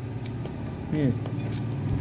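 A man's short "mmm" falling in pitch about a second in, made while chewing a mouthful of food, over a steady low hum.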